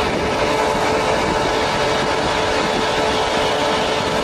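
Police SUV engine idling: a steady, unchanging hum with a constant tone.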